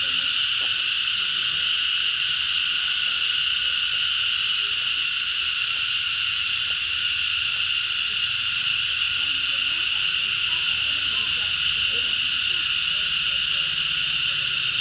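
Loud, steady chorus of insects, a continuous high-pitched buzzing drone that holds unchanged throughout.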